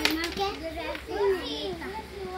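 Young children's voices, high-pitched chatter and vocalising with no clear words, with a sharp click right at the start.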